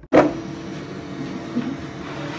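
An Elegoo Neptune 4 Plus 3D printer running with a steady fan hum, opened by a sharp knock just after the start.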